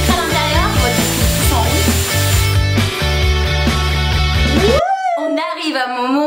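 Loud background rock music with a heavy bass line, cutting off abruptly about five seconds in; a voice follows.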